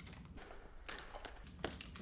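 Faint crinkling and small clicks of a plastic Jelly Tots sweet packet being handled and opened with the fingers.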